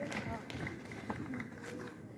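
Indistinct talk of several people at once, with a few small clicks and knocks.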